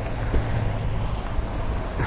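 Steady low rumble of street traffic mixed with wind buffeting the microphone, with no distinct events.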